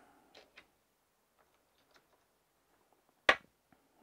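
Small metal parts of a Bosch GSR 12V-30 cordless drill's planetary gearbox clicking as the carrier, ring gear and planet gears are fitted by hand: a few faint clicks, then one sharp click about three seconds in.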